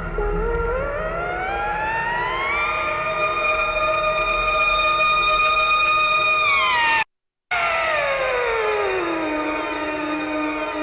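Electronic soundtrack of layered, siren-like tones that sweep up in pitch together over about two seconds and hold high. A sudden half-second silence breaks the sound about seven seconds in, then the tones slide back down and settle on a low held note.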